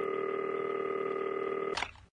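Telephone ringing: one steady electronic ring of about two seconds, ending in a click as the call is picked up.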